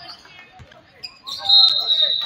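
Referee's whistle blown about a second in, one shrill high tone held for about a second, stopping play.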